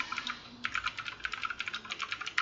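Computer keyboard typing: a few scattered keystrokes, then a quick run of rapid key clicks from about half a second in.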